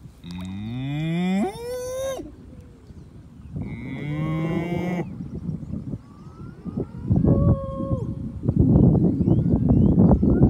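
Cattle mooing: a long call that rises in pitch over about two seconds at the start, a second call a few seconds in, and a fainter, steadier one around seven seconds. A loud rush of noise fills the last second and a half.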